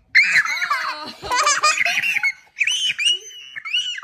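Young child laughing and squealing in several high-pitched bursts.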